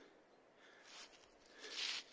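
Faint rustling of dry leaf litter underfoot as someone walks on a leaf-covered slope, with a louder hiss near the end.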